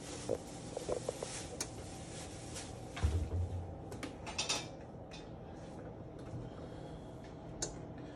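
A few light clicks and knocks, with a dull thump about three seconds in.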